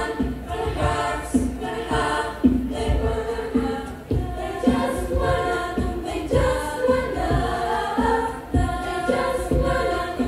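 A choir of young women singing in harmony, several voice parts at once, with low thumps recurring underneath the singing.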